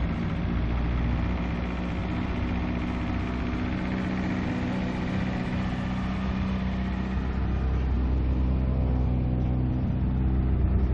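PSA 1.6 16-valve four-cylinder engine, fitted with individual throttle bodies and run by a Megasquirt plug-and-play ECU, idling steadily at an even pitch.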